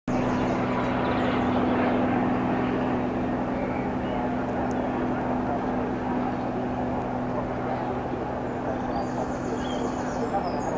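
Steady drone of light propeller aircraft engines, a low hum that holds one pitch and eases slightly after a few seconds, with indistinct voices mixed in.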